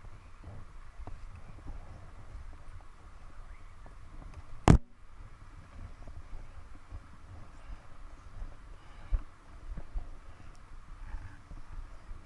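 Ski boots stepping and crunching in snow with irregular dull thumps, and about five seconds in a single loud, sharp knock, much louder than the steps, as something hard strikes.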